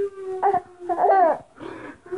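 Baby's high-pitched squealing, laugh-like vocalizations: a held note, then a louder wavering squeal just after a second in.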